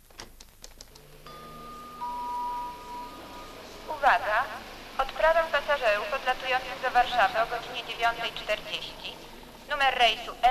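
A quick run of clicks, then a steady electronic beep tone, joined for about a second by a lower second tone, followed from about four seconds in by a voice talking.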